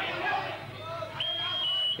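End-of-round buzzer, a single high steady tone lasting under a second that starts a little over halfway in and dips slightly in pitch before it stops, marking the end of the round, over crowd chatter.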